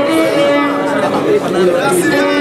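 Violin bowed in long held notes, with slides in pitch between them.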